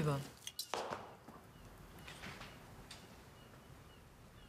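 Light clinks of cutlery against plates at a dining table, two sharp ones about half a second in, then a quiet room with faint, short high chirps.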